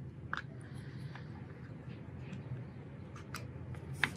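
Faint, scattered clicks and scrapes of a thin screwdriver working the set screw that locks the thread tension assembly into a JUKI industrial sewing machine's arm, with a sharper click near the end, over a low steady room hum.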